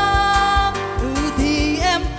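A woman singing with acoustic guitar and cajon. Her voice holds one long note, then slides through lower, wavering notes, over a steady cajon beat.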